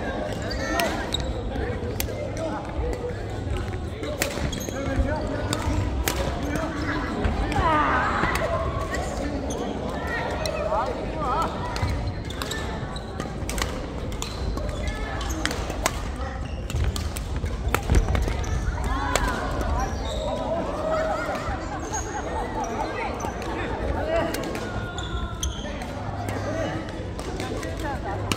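Badminton play in a large, echoing sports hall: sharp clicks of rackets striking the shuttlecock, repeated throughout, over voices from players around the hall.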